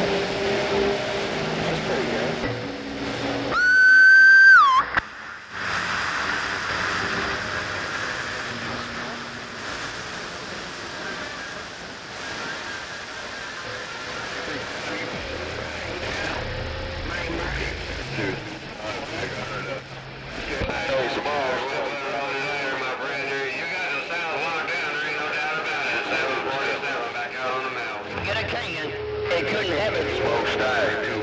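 CB radio receiver on the 11-metre band hissing with static, with faint garbled voices of distant stations drifting in and out. About three and a half seconds in, a loud whistling tone with overtones sounds for about a second and bends in pitch as it cuts off.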